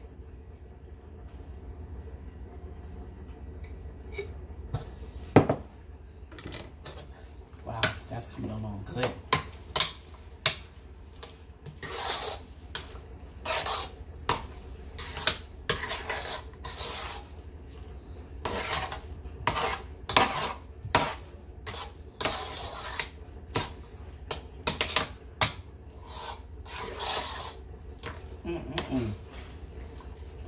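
A utensil stirring and scraping potato salad in a metal cooking pot, mixing in mayonnaise, with irregular clinks and scrapes against the pot. A single sharp knock about five seconds in is the loudest sound.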